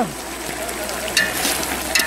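Mutton sizzling in a metal pot as the last of its cooking water dries off and it begins to fry, with a metal spoon scraping and stirring through the meat, two short scrapes standing out in the second half.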